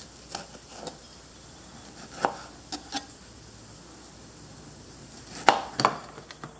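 Chef's knife slicing through strawberries and knocking down onto a plastic cutting board: a handful of separate cuts with pauses between them, the loudest two knocks close together near the end.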